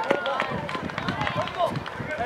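Several voices shouting and calling out over one another, with short knocks that fit running footsteps on dirt.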